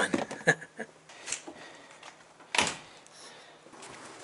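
A short laugh, then a few light clicks and one loud thump about two and a half seconds in as a VW Beetle's door is opened and shut on getting out of the car. The electric motor is already switched off.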